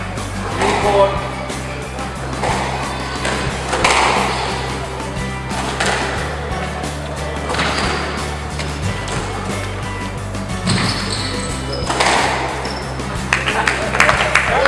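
Squash ball being struck by rackets and hitting the court walls in a rally, a sharp crack every second or two, over background music with a steady bass line and some voices.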